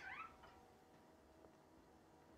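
Near silence: quiet room tone, with only a faint trailing end of a voice in the first moment.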